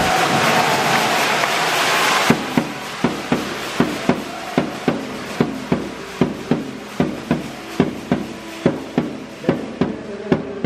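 Loud stadium noise for about two seconds cuts off abruptly. A steady beat of sharp, pounding strikes follows, about two and a half a second, with faint music-like tones between the strikes.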